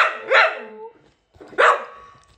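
A dog barking twice, about a second and a half apart, in a jealous tantrum for attention.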